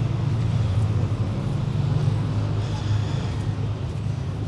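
A motor vehicle engine running with a steady low rumble, amid outdoor street noise.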